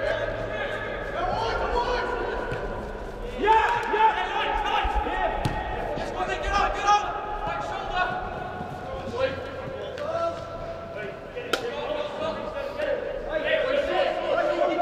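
Players' voices shouting and calling across a large echoing indoor sports hall, with the sharp thuds of a football being kicked on artificial turf; the loudest kick comes about eleven and a half seconds in.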